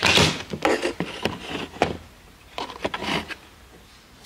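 Handling noise from the camera being moved and set in place: a run of knocks and rustles in the first two seconds, a few more about three seconds in, then quieter.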